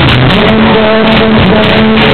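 Pop-rock band playing live, with a strummed acoustic guitar and a singer at the microphone. The sound is loud and even, with no treble, as picked up by a camera's microphone in the crowd.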